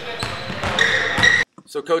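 Basketballs bouncing on a hardwood gym floor in a large echoing hall, about three sharp bounces with short high squeaks of sneakers. The gym sound cuts off suddenly a little past halfway, and a man starts speaking near the end.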